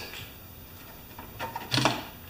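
Light clicks and taps of tools and small metal parts being handled on a lawn mower engine. They start about a second in, with a sharper clack near the end.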